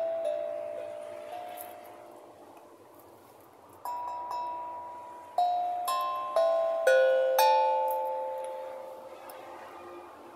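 Small steel tongue drum struck with mallets. One note at the start is left to ring and fade for several seconds, then a run of about seven notes follows from about four seconds in, each ringing on and dying away slowly.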